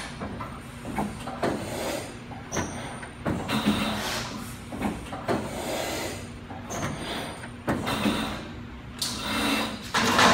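A 21-foot double-folding sheet-metal brake working a length of metal trim: its beams swing and clamp in a series of short sliding, clanking strokes about a second apart, the loudest near the end.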